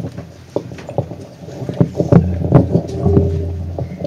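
Microphone handling noise: scattered knocks and thumps with a low rumble, heaviest in the second half.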